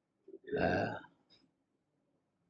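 A man's short, throaty vocal sound close to the microphone, lasting about half a second, a little way into an otherwise quiet pause.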